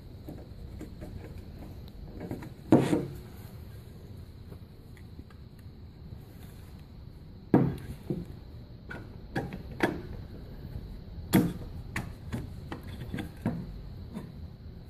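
Knocks and clunks as a capsule polisher's brush and its perforated metal case are handled against a wooden tabletop: a few sharp knocks, the loudest about three seconds in, with lighter clicks between.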